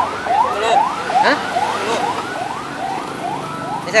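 Electronic siren warbling in quick, repeated rising-and-falling sweeps, about three a second.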